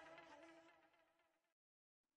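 Near silence: the barely audible tail of a song's fade-out dies away, and the sound cuts to dead silence about one and a half seconds in.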